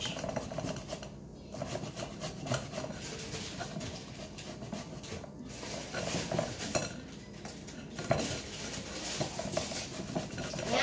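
A zucchini being grated by hand over a glass bowl: a run of irregular rasping strokes with small clicks of metal on glass.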